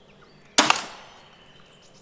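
Zubin X340 compound crossbow shooting once: a single sharp snap of the released string and limbs about half a second in, fading quickly.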